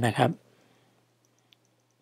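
A man's spoken phrase ends just after the start, then near silence broken by one faint click about a second and a half in: a stylus tapping on a tablet's glass screen during handwriting.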